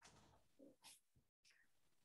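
Near silence: the faint room tone of a video call, with a brief total dropout in the audio about a second and a half in.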